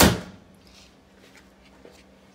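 A single sharp knock with a brief ring right at the start, then faint room tone.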